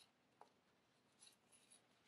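Near silence, with a faint tick and a few very faint, brief rustles of yarn being pulled through punched holes in paper.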